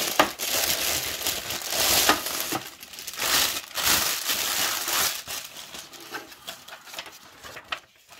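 Thin plastic packaging wrap crinkling and rustling as it is pulled off and handled. It is dense and loud for about the first five seconds, then thins to sparser, quieter crackles.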